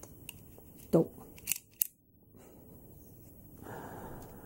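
Two sharp plastic clicks from a hard-plastic action figure's clamp accessory being worked by hand, followed by quieter handling noise.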